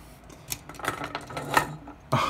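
A few light clicks and knocks of hard plastic toy robot parts as they are handled: the front-heavy transforming figure tips over onto the desk.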